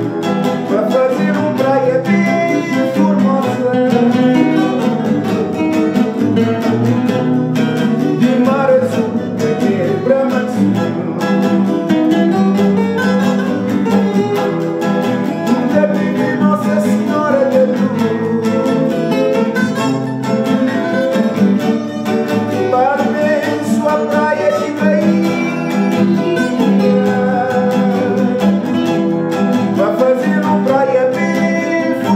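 A morna played live on several acoustic guitars and a small mandolin-style string instrument, with a man singing the melody over the steady strummed and picked accompaniment.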